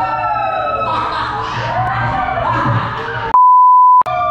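Music with gliding pitched notes, then about three seconds in it cuts off abruptly and a loud steady electronic beep at one pitch sounds for over half a second.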